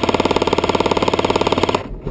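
Airsoft AK-style rifle firing one full-auto burst of rapid, evenly spaced shots that stops just before the end.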